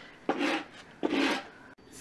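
A metal comb raked through a Norwich Terrier's wiry coat, two short rasping strokes under a second apart.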